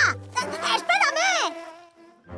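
Cartoon bee's wings buzzing as she flies off, with short pitched gliding effects. It dies away near the end.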